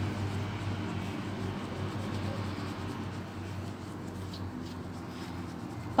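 Soft, steady rustling of a gloved hand rubbing soap lather over skin. A low hum fades out in the first second.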